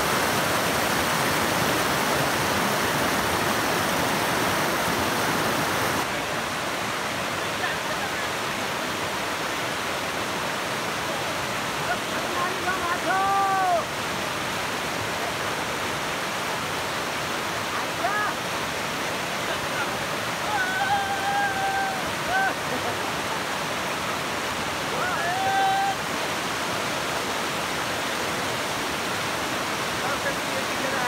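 Rushing water of a shallow, rocky mountain river running over stones, a steady rush that drops a little in level about six seconds in. Voices call out briefly several times in the second half.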